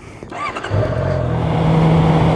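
Honda CB650F's inline-four engine running under way: faint at first, it comes up about two-thirds of a second in and holds a steady pitch.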